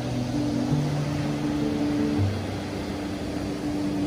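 Background music of slow, held notes that change every second or so, over a steady wash of surf.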